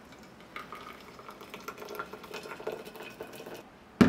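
Hot water pouring in a thin stream from a gooseneck kettle into a stainless-steel vacuum flask (Tiger thermos), from about half a second in until shortly before the end. A sharp clunk comes at the very end as the kettle is set down on the counter.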